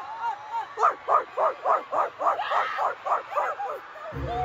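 Rapid yapping like a small dog's: about a dozen short, high yelps, roughly four a second, starting about a second in and stopping just before the end.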